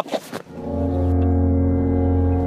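A deep, steady horn-like tone with rich overtones, an edited-in dramatic sound effect, starting about half a second in and held without a break, fading out after about three seconds.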